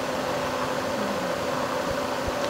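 Steady background hiss with a faint low hum: the room tone of a speech recording, with no voice.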